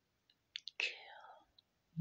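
A woman whispering a short breathy word about a second in, just after two faint clicks.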